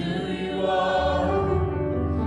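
Church worship song: several voices singing together over musical accompaniment, a sustained phrase that swells in at the start and holds.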